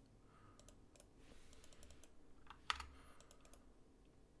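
Faint clicking of a computer keyboard and mouse in an irregular run of separate clicks.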